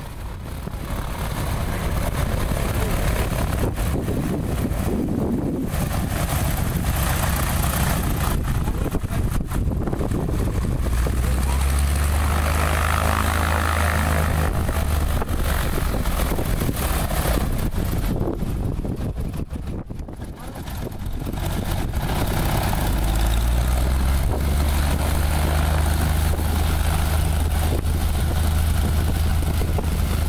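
Single-engine propeller plane, a 1997 Maule, running at low taxi power on the grass. The engine-and-propeller sound grows louder from about twelve seconds in, dips briefly around twenty seconds, and then holds steady and loud again.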